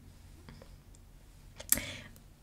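A few faint computer mouse clicks, with a louder click about three-quarters of the way through.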